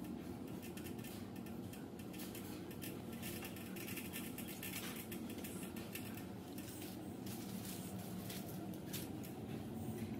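Paintbrush being drawn along a plaster wall edge: a run of soft, scratchy brush strokes, coming in clusters, over a steady low hum.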